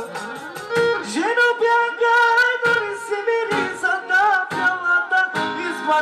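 Loud dance music with a singing voice over instruments, including a plucked string instrument, and a regular percussive beat.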